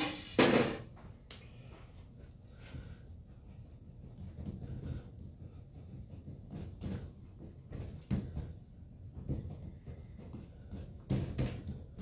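Pastry dough being handled and scored with a knife on a floured worktable: scattered soft knocks, thumps and rubbing, with a louder sharp sound right at the start.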